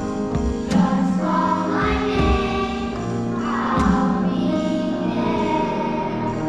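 A choir singing with band accompaniment and an electronic drum kit keeping time, with two sharp accented drum-and-cymbal hits, one about a second in and another near four seconds.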